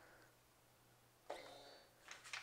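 Near silence: room tone, with a faint hiss and thin high hum coming in about a second and a half in.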